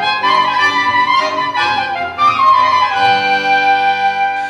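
A soprano saxophone plays a melody of held notes over sustained concert-accordion chords and a double bass: a saxophone, accordion and double bass trio playing live.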